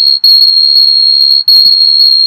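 Acoustic feedback squeal: a loud, steady high-pitched tone from a microphone picking up its own speaker output, dropping out for an instant twice.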